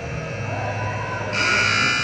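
Arena buzzer sounding a steady, high electric tone that jumps much louder a little past halfway through, signalling the end of the game.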